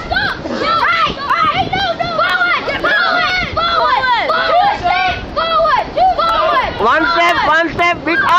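Several people's voices calling out at once, overlapping and fairly loud, as onlookers shout guidance to a blindfolded player.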